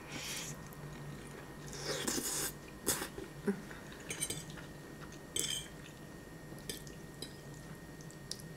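Close-miked eating: slurping and chewing a forkful of spaghetti, with a few sharp clicks of a metal fork against a plate.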